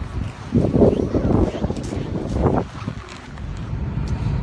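Wind buffeting a phone's microphone in gusts, a long rush about half a second in and a shorter one near the middle.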